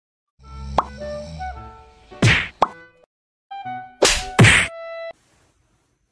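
Cartoon-style comedy sound effects: about five sharp whacks mixed with short musical tones, cutting off suddenly about five seconds in.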